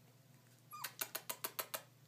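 A four-week-old goldendoodle puppy gives a short squeak, then a rapid run of about seven yips lasting about a second, around the middle.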